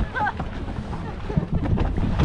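Wind buffeting the microphone on an open boat, an uneven low rumble, with a short burst of laughter right at the start.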